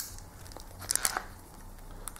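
Handling noise from a RØDE VideoMic Go shotgun microphone and its shock mount being turned over in the hands: a sharp click, then a short burst of clicks and crinkling about a second in.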